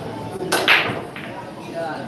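Pool break shot: a loud, sharp crack of the cue ball smashing into the racked balls about half a second in, then the balls clacking together as they scatter, with another click a moment later.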